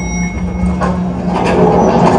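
Dance-routine soundtrack played loud over a hall PA at a break without a beat: a steady low drone under a noisy hiss, with a few sharp hits.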